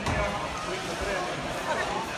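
Indistinct voices of people around an echoing sports hall, with a soft thump right at the start.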